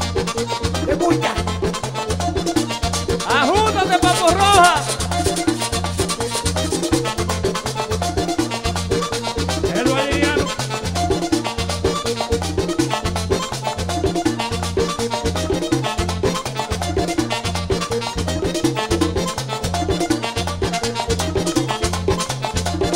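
Dominican merengue típico music: an instrumental stretch with accordion over a steady, driving bass and percussion beat. A brief bending melodic line stands out, loudest about four seconds in, and returns more faintly near ten seconds.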